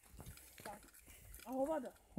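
Faint, irregular footsteps on a dirt forest path, with a short voice sound near the end.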